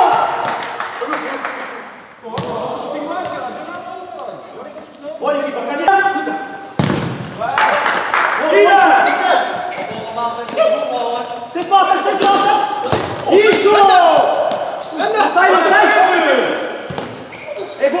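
Futsal game in an echoing indoor sports hall: the ball is kicked and thuds on the court a few times, sharp and sudden, while players shout to each other across the court.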